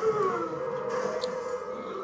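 Movie soundtrack music playing from a television in the room, with a long, slightly wavering held tone.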